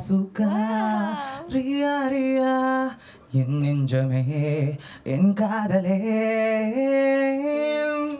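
A man singing solo into a handheld microphone, with no accompaniment. He sings three phrases of long held notes with a wavering vibrato, breaking briefly about three and five seconds in and ending just before the close.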